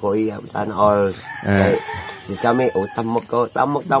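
A man making wordless, chicken-like vocal calls in a quick run of short voiced sounds.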